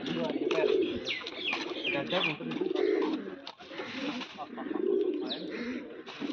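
Domestic pigeons cooing: a run of low, rolling coos, one every second or two, with some short high chirps over them in the first few seconds.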